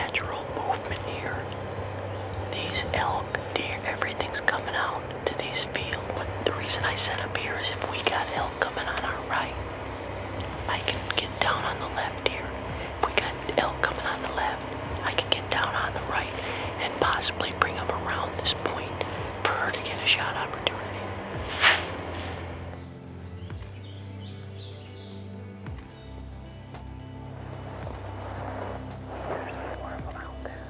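Hushed, whispered talk between hunters over a low, steady music bed, with one sharp click about two-thirds of the way in; after that the whispering stops and only the quiet music goes on.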